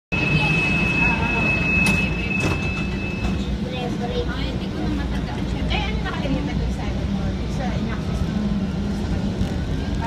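Rumble of an MRT-3 elevated train running slowly along its track, heard inside the car. A steady high whine sounds over about the first three and a half seconds, and voices talk in the background.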